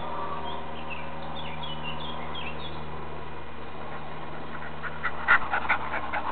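Dog giving a few short, high whines, then mouthing and chewing a ball close to the microphone, a quick run of sharp clicks near the end.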